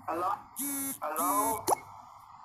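Short snatches of people's voices over an online video call, with a quick rising blip near the end.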